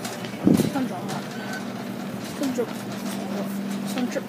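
Store ambience: a steady hum under scattered faint voices, with a short, louder vocal sound about half a second in.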